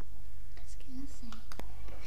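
Faint whispering children's voices with a couple of short murmured sounds about a second in, over a steady low hum in the recording.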